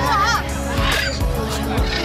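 Pet parrots calling with harsh, warbling squawks during free flight, one early and another about a second in, over background music.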